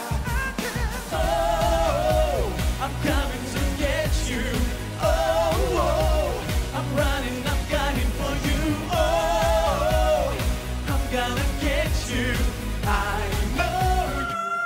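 Up-tempo pop song with a male lead singer over a steady beat, from a live stage performance.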